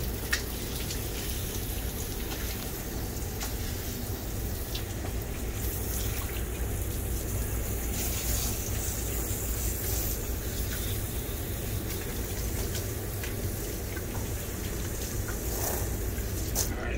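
Water running steadily from a handheld sprayer hose onto a Great Dane's coat and into a stainless steel wash tub.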